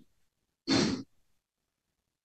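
One short, breathy sigh, a person exhaling audibly for under half a second, a little under a second in.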